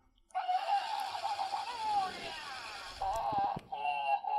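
Grumbly electronic toy, set off by a press on its belly, playing its grumbling, upset-sounding voice noises over a hiss for about three seconds, breaking off briefly and starting again near the end.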